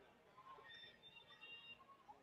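Near silence: faint background ambience, with a few faint, thin high tones about halfway through.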